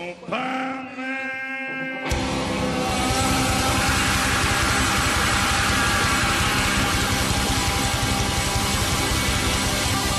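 Rock music with distorted electric guitars. After a brief intro of rising tones, the full band comes in suddenly about two seconds in and plays on loud and dense.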